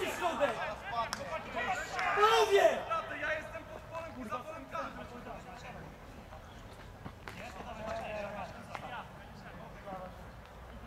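Football players shouting on the pitch during play, loudest in the first three seconds and again briefly near the end, with a few sharp knocks.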